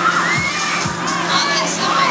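Riders on a swinging fairground ride shouting and screaming, several voices overlapping in rising and falling cries over a steady low hum.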